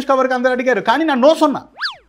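A man talking, then near the end a short comic sound effect: a quick pitch glide that sweeps up high and straight back down, a cartoon-style boing.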